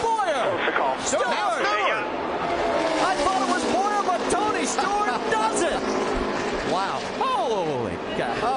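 NASCAR stock car V8 engines at full throttle as the pack crosses the finish line, their pitch rising and falling as the cars pass. A grandstand crowd and a jumble of voices sound over them.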